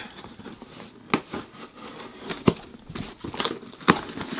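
A knife slitting packing tape on a small cardboard box and the cardboard flaps being pulled open: scraping and crinkling of tape and cardboard, with three sharp clicks spaced out through it.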